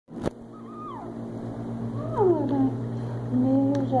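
Newborn baby fussing and crying in short wails that fall in pitch, the loudest about two seconds in, as he chews on his mittens with hunger. A steady low hum runs underneath.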